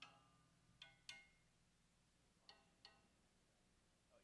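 Quiet, sparse synthesizer notes: a handful of short, bright pitched blips, mostly in pairs, each ringing briefly, with near silence between them.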